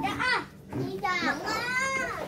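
Young children's high voices: a short call, then a long drawn-out call about halfway through.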